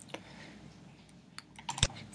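A few quiet, sharp clicks from working a computer, with a quick cluster near the end, the last one the loudest.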